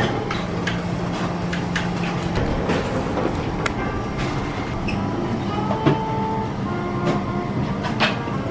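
Busy restaurant background: dishes clinking and clattering in irregular clicks over a steady low hum, with a few short ringing clinks about six seconds in.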